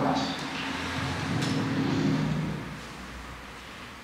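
Soundtrack of a projected TV episode clip heard through room speakers: a low, steady rumble that fades about two and a half seconds in.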